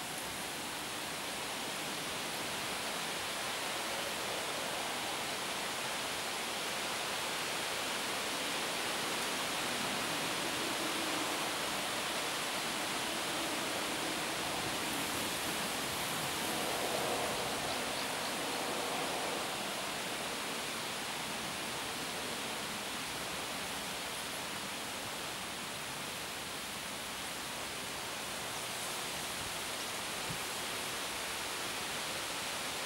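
Steady rushing noise of river water flowing, with no distinct events, swelling slightly in the middle.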